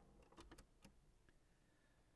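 Near silence, broken by about five faint, short clicks and taps in the first second and a half.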